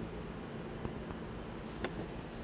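Ford Explorer's power-folding third-row seats lowering: a faint, steady electric-motor hum, with a light click near the end.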